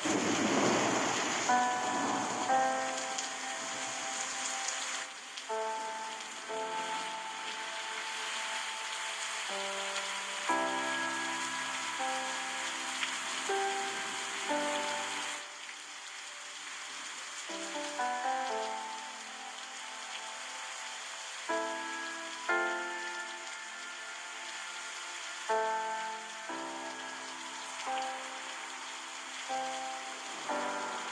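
A gentle instrumental melody of held notes, played in slow phrases over a steady rushing sound of flowing river water. The water sound swells in at the very start.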